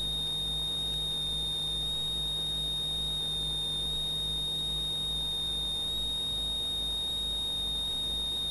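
A steady high-pitched electronic whine holds at one pitch, with a low electrical hum and faint hiss beneath it.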